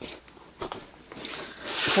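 Light rubbing and small clicks as hands handle and turn a fabric-covered cardboard box on a cutting mat, closing its lid, with a rising rustle near the end.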